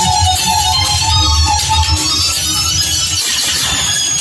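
Music with a melody line over a low bass, the bass dropping out briefly near the end.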